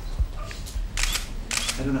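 Camera shutters clicking, a few quick clicks about one to one and a half seconds in, then a man's voice starts speaking near the end.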